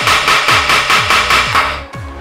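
Wooden gavel banged on its sound block in a rapid run of sharp knocks that stops just before the end. Background music with a pulsing bass runs underneath.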